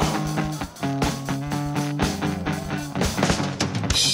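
Live punk rock band playing an instrumental stretch: distorted electric guitar chords over a drum kit, with no singing in this passage.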